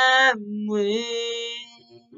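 A male voice singing a cappella, holding wordless notes: a held note breaks off shortly after the start, a lower note follows, and the singing fades out near the end.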